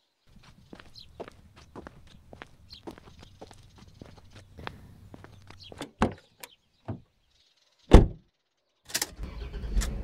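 Sound effects of footsteps walking away, followed by knocks and a heavy car door thudding shut about eight seconds in. Then a car engine starts and runs with a steady low rumble.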